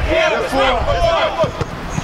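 Men's voices shouting on a football pitch, with a couple of short thuds.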